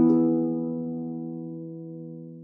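A four-voice musical example played on a plucked string instrument. The final chord of a soft cadence to E, with its third sharpened to make the harmony major, has its last notes entering just at the start, then rings and fades away steadily.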